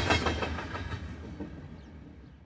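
Double-stack intermodal freight train rolling past, its steel wheels running on the rails, fading out steadily.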